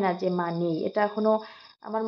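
A woman speaking in Bengali, pausing briefly near the end, over a steady high-pitched chirring of insects.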